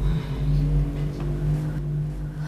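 A motor vehicle engine running steadily with a low, even hum.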